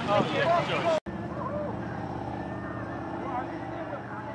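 A voice for the first second, then a sudden cut to street sound: a steady low hum of road traffic with a few faint voices from people along the roadside.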